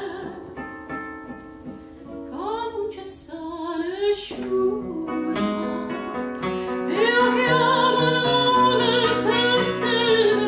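A woman singing a Neapolitan song with a nylon-string classical guitar accompaniment. The guitar plays more softly alone for the first couple of seconds, then her short phrases with vibrato lead into a long held note from about seven seconds in.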